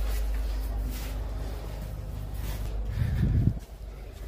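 Low rumble of wind and handling noise on a phone microphone while walking down carpeted stairs, with soft, faint footsteps. A brief low muffled thump about three seconds in.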